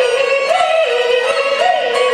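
A female Peking opera singer holds one long sung note, lifting it briefly and letting it fall back twice, over string accompaniment.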